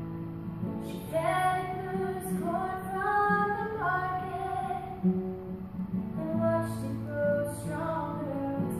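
A woman singing to her own strummed acoustic guitar, holding long sung notes over the steady chords.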